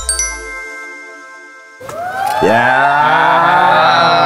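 Edited-in sound effect: a bright chime rings and fades over about two seconds. About two seconds in, a loud, sustained, wavering sound with many overtones takes over.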